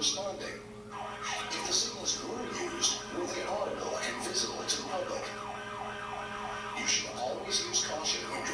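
Emergency vehicle siren sweeping quickly up and down over and over, played back from a training video through room speakers.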